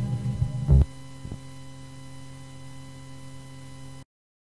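A rock-reggae song ends on a loud final hit a little under a second in, leaving a steady electrical mains hum on the recording that cuts off suddenly.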